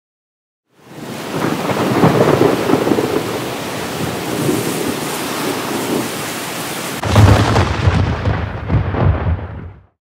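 Rain falling with thunder rumbling, coming in about a second in. A sudden heavy rumble of thunder breaks about seven seconds in, then the storm fades out near the end.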